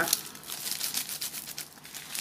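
Thin clear plastic wrapping around a baguette crinkling and crackling as it is handled, a quick, irregular run of crackles.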